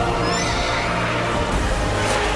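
Film sound effect of a giant eagle's screeching cry, one high wavering call about half a second in, over dramatic orchestral music.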